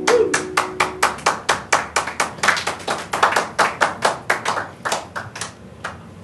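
A few people clapping after an acoustic guitar song ends, the last strummed chord ringing out underneath for the first second or two. The claps come quickly and unevenly, then thin out and stop shortly before the end.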